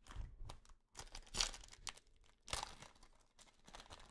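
Foil wrapper of a trading-card pack crinkling as gloved hands handle it, in a few short, faint bursts.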